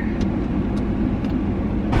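Steady low rumble of a car heard from inside the cabin, engine and road noise under the air conditioning, with a few faint ticks about half a second apart.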